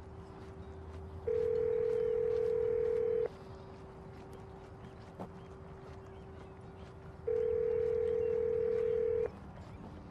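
Telephone ringback tone of a call ringing through to a US cell phone: two rings, each about two seconds long, four seconds apart. A fainter steady lower tone runs underneath.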